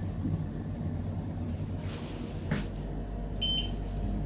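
Schindler 3300 machine-room-less elevator car coming to its stop, a low hum fading out, followed by a rush of noise and a single clunk about two and a half seconds in. Near the end a short, high electronic beep sounds as a car button is pressed.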